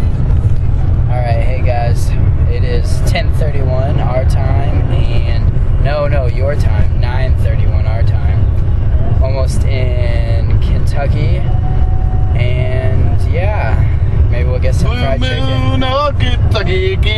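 Steady low rumble of road and engine noise inside a moving car. A voice sounds over it in wavering, drawn-out pitches without clear words.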